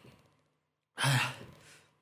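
A person sighs once, about a second in: a short, breathy exhale with a little voice in it.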